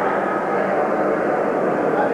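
Steady murmur of many people talking at once, blurred by the echo of a large indoor hall.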